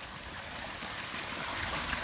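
Water pouring from a culvert pipe into a creek pool, a steady rushing splash that grows gradually louder.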